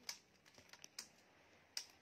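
Near silence with a few faint, scattered clicks and taps, about five in two seconds.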